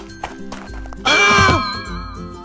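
Cartoon background music, with a loud pitched cry about a second in that lasts about half a second and falls in pitch: a comic sound effect as a letter character is knocked down.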